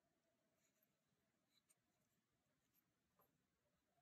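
Near silence: room tone, with two very faint ticks, one about a second and a half in and one about three seconds in.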